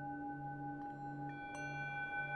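Singing bowl drone tuned to D, sustained and steady, its low note wavering in a slow pulse about twice a second. A higher ringing tone joins a little over a second in.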